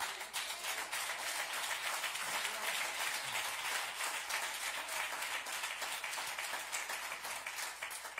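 Congregation applauding, with many hands clapping together, dying down near the end.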